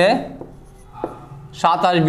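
Marker pen writing on a whiteboard, with faint scratchy strokes and a single tap about halfway. A man starts speaking near the end.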